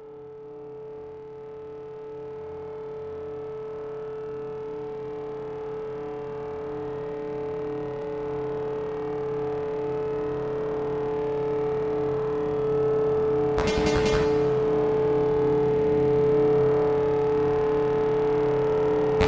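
Experimental electronic music made on an EMS Synthi VCS3 synthesizer and computer: a steady drone at one pitch with lower tones beneath, fading in and growing louder throughout. A brief burst of noise cuts across it about three-quarters of the way through.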